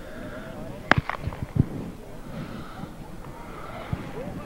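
Faint distant voices of people talking outdoors, with a few short sharp knocks, the strongest about a second in.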